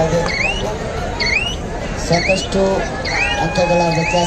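Spectators whistling again and again, short rising swoops about once a second, over crowd hubbub and voices.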